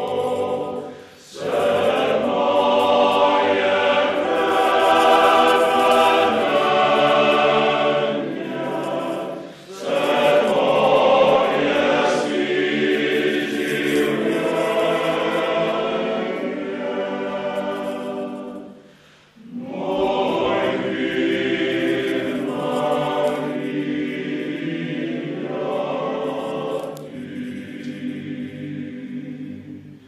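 Male choir singing in sustained phrases, broken by brief breaths or pauses three times.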